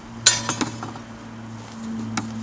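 Metal cookware clanking at a small kettle grill: one sharp ringing clank about a quarter second in, another soon after, then a few lighter clinks, over a steady low hum.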